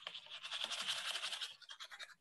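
Paintbrush bristles scrubbing quickly back and forth on canvas: a rapid, dry scratching that swells and then fades out near the end.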